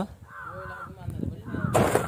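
A faint voice, then a short, loud burst of noise near the end.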